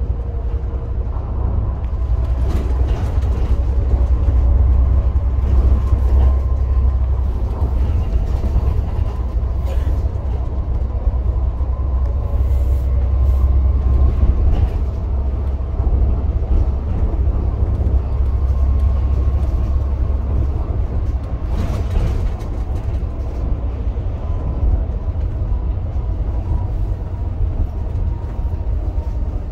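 Volvo B7TL Wright Eclipse Gemini double-decker bus under way, heard from inside on the upper deck. The diesel engine runs with a steady low drone that is louder in the first half and eases later on. A faint whine sits above it, and a few brief knocks and rattles come through.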